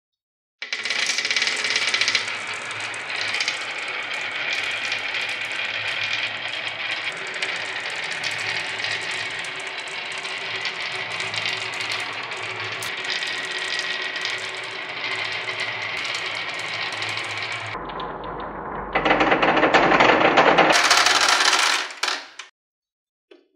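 Many small marbles rolling and clattering in a dense, continuous rattle down a wavy-grooved wooden slope board, starting about half a second in. Near the end there is a louder burst of clatter as the marbles pour into a plastic toy garage.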